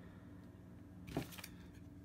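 A brief click with a light rustle about a second in, from two folding knives being handled and brought together in the hands.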